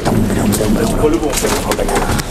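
Indistinct voices in the background, with a few sharp knocks from shoes on the metal steps and cab of a Kirovets tractor as someone climbs in.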